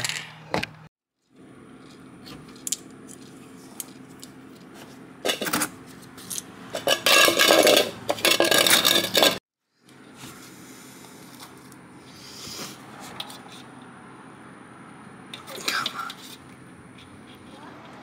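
Channel-lock pliers scraping and clicking against a Nissan 350Z's washer fluid level sensor as it is forced out of its tight rubber grommet, over a steady low hum. The loudest part is a rough scraping stretch of a few seconds in the middle.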